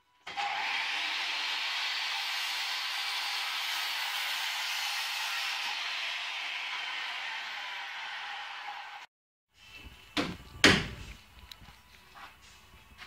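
Corded circular saw cutting along a wooden board, a steady loud run of about nine seconds that cuts off suddenly. Two sharp knocks follow near the end.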